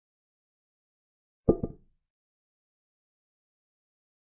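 Online chess board's piece-move sound effect: one short wooden clack, doubled, about one and a half seconds in, as a knight captures a rook.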